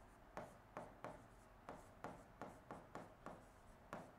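Faint, short scratches and taps of a pen writing on the screen of an interactive whiteboard, about a dozen brief strokes at an uneven pace.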